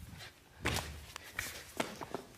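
A few soft thumps and scuffs of several people landing frog leaps and settling onto a studio floor, the clearest about two-thirds of a second in and two more near the end.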